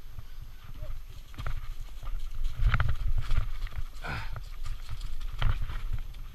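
Santa Cruz Nomad full-suspension mountain bike descending singletrack: tyres rolling over a steady low rumble, with irregular knocks and rattles from the bike as it rides over logs and roots. The loudest knocks come a little before and after three seconds in.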